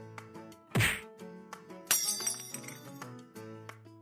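Soft background music with sustained notes, broken by a sharp hit just under a second in and a bright shimmering burst at about two seconds. These are edited-in transition effects.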